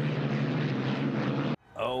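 Racing hydroplane boats running at speed: a loud, steady engine roar with a low hum that cuts off suddenly near the end, followed by a brief voice.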